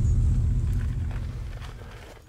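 Low engine and exhaust rumble of a stretched Jeep CJ7 with an all-aluminium 5.3 LS V8, fading steadily as the Jeep drives away over an icy dirt road.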